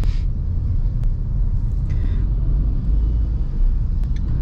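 Steady low rumble of road, tyre and engine noise inside the cabin of a Maruti Suzuki Vitara Brezza cruising at highway speed.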